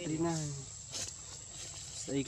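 A man's voice speaks briefly at the start, then a steady high-pitched insect drone carries on under quiet outdoor background, with a single sharp click about a second in.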